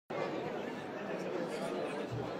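Crowd chatter: many people talking at once among themselves, their voices overlapping into an even babble.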